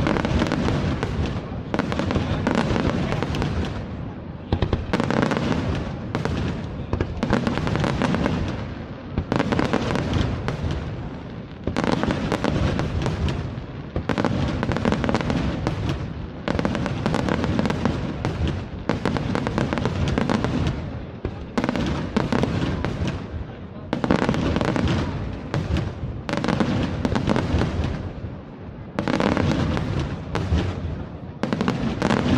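Aerial firework shells bursting in a loud, continuous barrage, a fresh burst about every second with barely a pause between.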